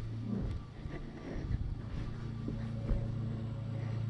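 A steady low hum with faint, irregular rustles and small bumps on top.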